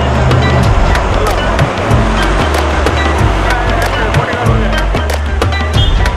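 Loud music with a driving drum beat: many sharp percussive strikes over a repeating deep bass line.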